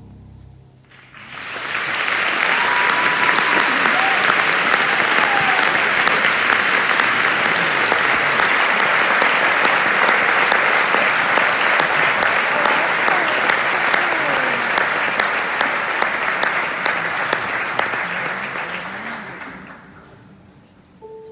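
Theatre audience applauding at the end of a piece: the applause swells about a second in, holds as a dense clapping with voices calling out here and there, and fades away near the end.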